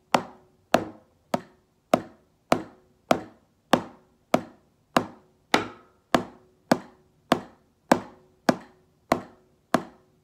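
Wooden drumsticks striking a practice pad in single strokes, eight on one hand and then eight on the other. The strokes are evenly spaced at about 100 a minute, each a sharp tap that dies away quickly.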